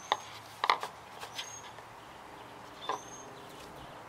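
Plastic syringe drawing old brake fluid out of a master cylinder reservoir: about three short sucking sounds, each with a brief high squeak.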